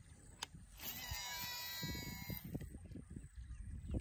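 Shimano Scorpion DC baitcasting reel on a cast: a click, then the digital-control brake's whine as the spool pays out line, several pitches sliding downward for about a second and a half as the spool slows. Soft handling rustle follows.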